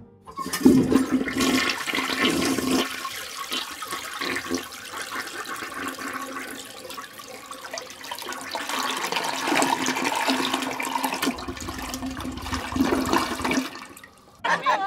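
A toilet flushing: rushing, gurgling water that starts about half a second in, runs on for many seconds, and stops abruptly near the end.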